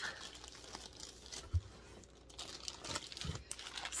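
Clear plastic wrapping around bundles of yarn skeins crinkling and rustling as they are handled and lifted out of a box, with two soft low thumps.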